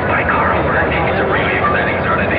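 Indistinct voices, too unclear to make out words, over a steady rumbling noise.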